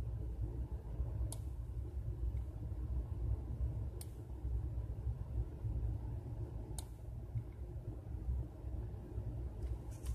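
Three single computer mouse clicks a few seconds apart, over a steady low rumble.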